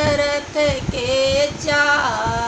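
An older woman singing a folk song celebrating Ram's birth, unaccompanied, holding long notes that bend between pitches.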